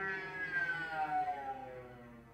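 Solo cello bowed, playing a phrase that falls in pitch and fades away near the end.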